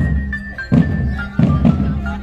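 Marching drum band playing: sharp drum strokes with a melody of held high notes stepping up and down between them.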